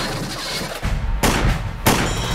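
Two pistol shots, film sound effects, about two-thirds of a second apart, the second the louder, over a low rumble.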